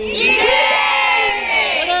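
A large crowd of women shouting a protest slogan together, answering a leader's call, for most of the two seconds.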